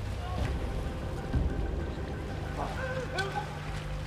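Outboard motor of an inflatable rescue boat running on the water, a steady low hum that settles in from about halfway through, with faint voices calling.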